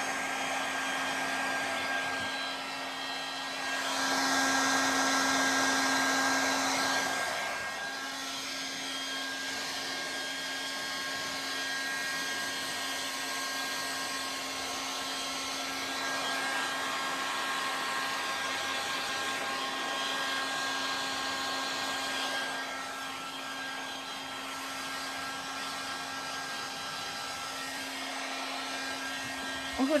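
Handheld hair dryer blowing steadily on wet hair: a rush of air over a steady motor hum. It grows louder for a few seconds about four seconds in.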